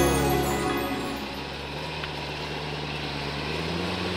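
V8 engine of a Land Rover Discovery 1 idling steadily, with a slight rise in pitch and back near the end, under fading background music.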